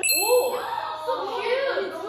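A single bright bell-like ding right at the start, ringing for less than a second, over several women's voices talking and exclaiming.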